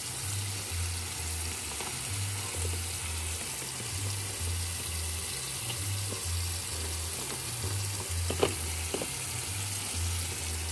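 Kitchen tap running in a steady stream into a stainless steel sink, a constant hiss of water. Two sharp knocks come about half a second apart near the end.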